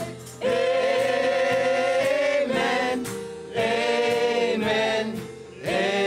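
Worship song with singing: long held, wavering notes in phrases of one to two seconds, with short breaks between phrases.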